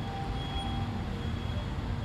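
Steady low background rumble with a faint steady high-pitched whine.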